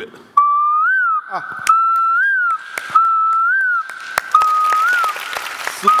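A boy whistling into a microphone: five whistled notes, each a held tone of about a second that ends in a quick rise and fall. Scattered claps sound between them.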